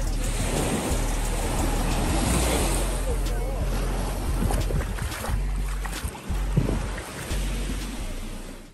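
Beach ambience: small waves washing onto the sand, with people's voices in the background and wind rumbling on the microphone.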